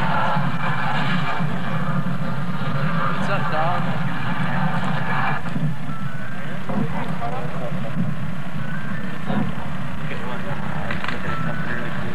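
A film soundtrack playing over loudspeakers: a steady low engine-like rumble with music and indistinct voices over it.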